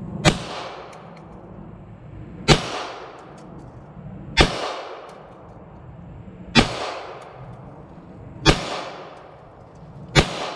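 Five shots from a Bul Armory SAS II Ultralight Comp 3.25, a compensated 9mm pistol, fired slowly about two seconds apart, each a sharp crack with a short echo trailing off.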